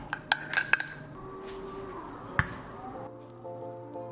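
A long metal spoon clinking against a glass jar several times in quick succession in the first second as chia seeds and almond milk are stirred, then a single sharp knock about two and a half seconds in. Background music plays throughout.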